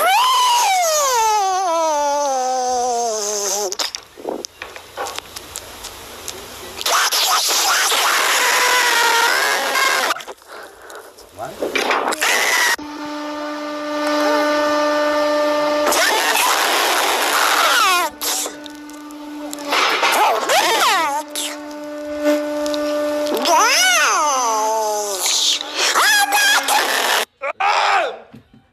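Played-back soundtrack of short phone videos: voices with music, opening on a long falling squeal and, mid-way, a held steady tone.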